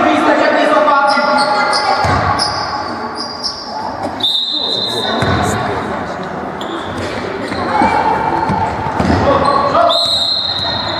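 Basketball bouncing on a gym floor in a large echoing hall, with a referee's whistle blowing once about four seconds in and again near the end.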